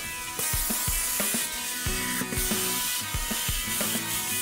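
Plasma cutter starting about half a second in and cutting through the rusted steel footwell floor with a steady high hiss. Background music with a beat plays underneath.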